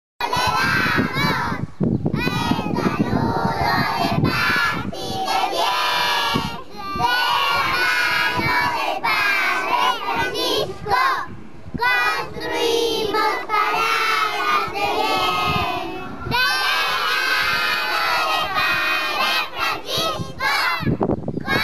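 A chorus of young girls' voices, loud and in unison, in phrases a few seconds long with short pauses between.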